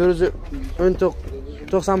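A man's voice speaking in short phrases, over a steady low rumble.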